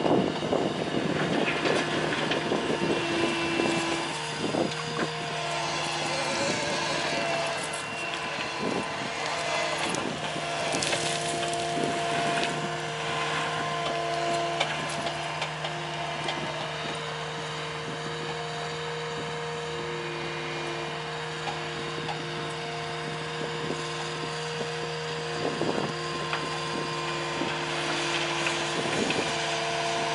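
Caterpillar 289D compact track loader's diesel engine running steadily under load while it pushes into a pile of pit run gravel and dirt. A hydraulic whine comes and goes over the engine, with scattered knocks and scrapes from the bucket and tracks on rock.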